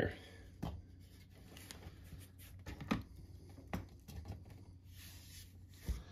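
Faint, scattered clicks and taps of a small transformable toy figure being handled and set down on a tabletop, a few separate knocks a second or so apart.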